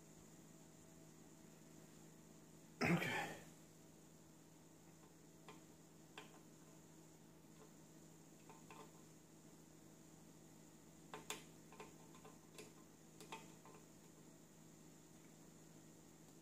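Faint scattered clicks and light scrapes of a small screwdriver tip working in a tiny metal screw head that has been cut into a slot, over quiet room tone. The clicks cluster in the second half.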